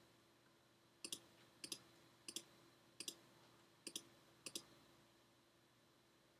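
Computer mouse clicking six times, each click a quick pair of sharp ticks, spaced about half a second to a second apart, faint over a quiet room.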